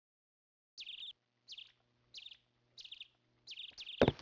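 A small bird chirping: five short, clear calls at an even pace of about one every two-thirds of a second, beginning just under a second in.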